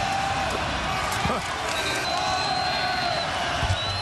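Basketball arena crowd noise: a steady din of spectators cheering and yelling during a stoppage for a foul late in a close game.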